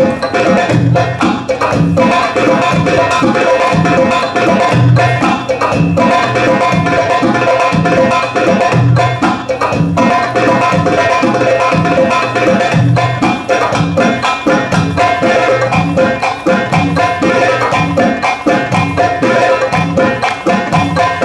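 Live Arabic tabla (goblet drum) playing a belly-dance drum solo improvisation: fast rolls of sharp rim strokes with deep bass strokes recurring throughout. A steady held tone sounds underneath.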